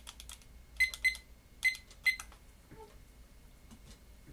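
A handful of sharp, irregularly spaced key clicks, each with a brief high ring, in the first two seconds or so.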